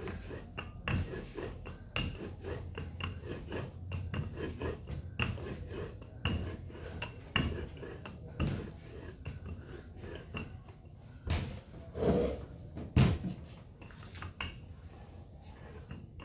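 Rolling pin worked back and forth over a sheet of laminated dough on a work table, with a string of irregular light knocks and clacks and a few heavier thumps past the middle.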